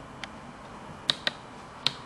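A few sharp clicks and taps from the camera being handled and set in place: four in all, the loudest two close together a little past one second in, over a steady background hiss.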